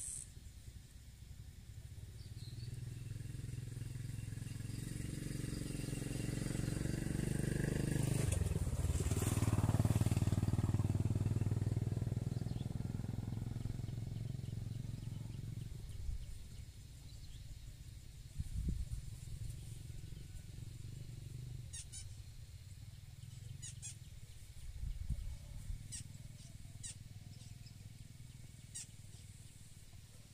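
A motor vehicle, most like a motorcycle, passing by: its engine grows louder for about ten seconds and then fades away. A few short, high ticks follow near the end.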